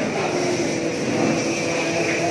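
A man's voice chanting Quranic recitation aloud, leading congregational prayer, in long held notes that glide slowly in pitch.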